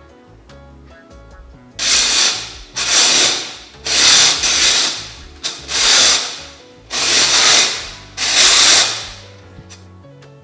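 Six short noisy strokes about a second apart: a 3D-printed circular knitting machine's cam ring being turned by hand, its latch needles sliding and rubbing through the plastic cam track. Background music plays underneath.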